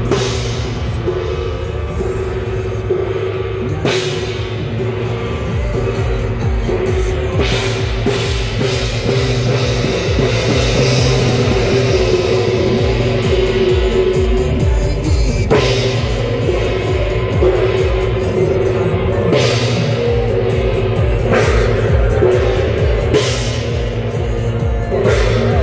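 Loud temple-procession percussion: continuous drumming with a hand gong ringing among sustained pitched tones, and sharp bangs every few seconds cutting through.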